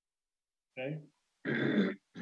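A man's voice over a video call: a short "okay" about a second in, then a drawn-out vocal sound near the end, after silence at the start.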